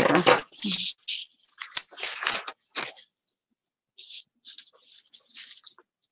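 Black lace trim and paper being handled, in several short scratchy rustles that come in two spells with a short pause between them.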